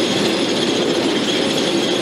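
Heavy ore-handling machinery running, most likely the two-rotor reclaiming machines: a loud, steady, dense mechanical rattle and clatter with a high whine over it.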